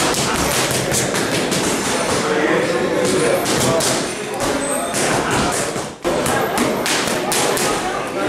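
Boxing gloves striking padded focus mitts in fast combinations: quick runs of sharp slaps and thuds, with voices underneath.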